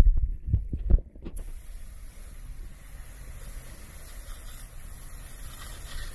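A few knocks and clicks as a spray tip is fitted by hand, then, about a second and a half in, a softwash spray nozzle opens with a sudden, steady hiss.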